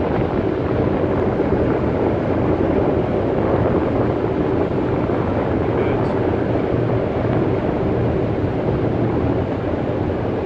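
A cargo ship's engine and machinery running with a steady low hum, heard from the deck while the ship moves slowly through the harbour.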